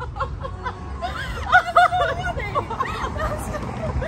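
Two women laughing in excited fits, loudest about one and a half to two seconds in.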